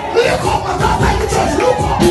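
A crowd of voices shouting and praising over lively church music with a steady beat.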